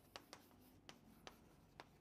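Chalk writing on a chalkboard: faint, sparse taps and short scrapes as the chalk strikes and moves across the board, about five small clicks.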